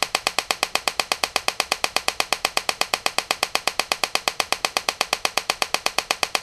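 Homemade TEA nitrogen laser firing repeatedly, each pulse an electrical discharge that makes a sharp snap, several a second in a steady, even train. It is pumping a dye laser.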